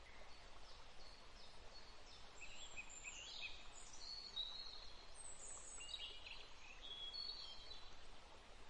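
Faint birdsong: short high chirps and whistles over a low steady hiss, starting about two seconds in.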